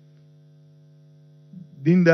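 Steady electrical mains hum, a low buzz with evenly spaced overtones, heard in a pause in speech. A man's voice starts again near the end.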